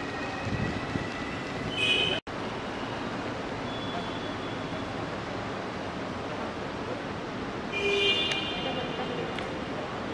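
Steady road traffic noise. A brief high-pitched tone sounds about two seconds in and again about eight seconds in, and the sound cuts out for an instant just after the first tone.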